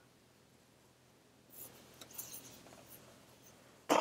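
Faint handling sounds of a laptop being folded over on its 360-degree hinge: a few soft scrapes, rubs and light taps of hands and chassis, starting about a second and a half in after near silence.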